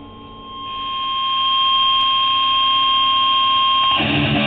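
DBZ Barchetta electric guitar through a distorted amp, sustaining a high, steady feedback tone that swells in over the first second and a half and then holds. Strummed guitar comes in at the very end.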